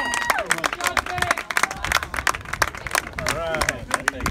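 Spectators applauding a home run: a dense, uneven patter of many hands clapping, with a few shouted voices.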